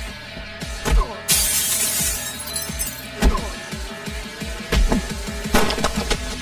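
A large glass window shattering about a second in, a burst of breaking glass with tinkling shards falling after it, over film score music. Several heavy thuds follow later on.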